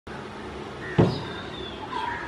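A single heavy, dull thump about halfway through, over steady outdoor background noise with faint, high, short chirps.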